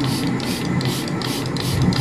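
Hand trigger spray bottle pumped over and over, spritzing degreaser onto a rusty chain: short hissing sprays, about three a second.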